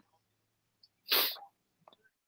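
A single short sneeze about a second in, with a faint low hum around it.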